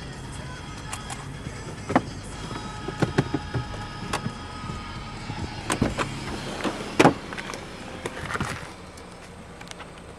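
Sounds from inside a car: scattered sharp clicks and knocks over a low steady rumble, the loudest knock about seven seconds in.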